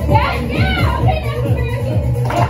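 Loud music with a steady bass line, under the shouts and chatter of a group of teenagers.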